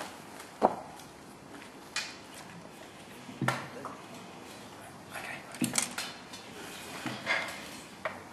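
Knocks and clunks of a music stand and classical guitars being handled and set up: about five separate bumps, a second or two apart.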